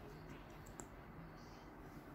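Near silence with a few faint small clicks, about half a second in and again just before the one-second mark: a liquid lipstick tube being handled and opened.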